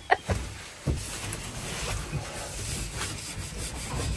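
A brush scrubbing the van's interior trim and upholstery, a steady rough rubbing noise, after a few short knocks in the first second.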